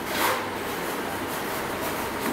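Steady hiss of room noise, with a short rustling swell about a quarter-second in.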